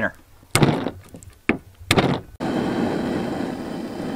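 Three short thunks in the first two seconds, then, after an abrupt change a little past halfway, the steady hiss of a propane camp stove burner running.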